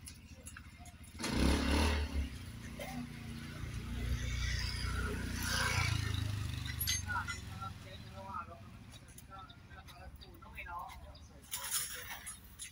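A motor vehicle passing on a nearby road, its engine noise swelling and fading over a few seconds, with faint voices in the background and a sudden deep thump of microphone handling about a second in.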